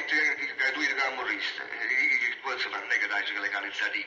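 Speech only: people talking in Italian in an old, thin-sounding recording.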